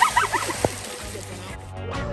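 A person splashing down into a pool of water off a rope swing, with voices shouting over the splash. Music comes in near the end.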